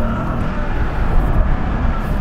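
RAM TRX's supercharged 6.2-litre Hemi V8 running steadily under load as the truck drives over loose dirt, with low rumble from the tyres.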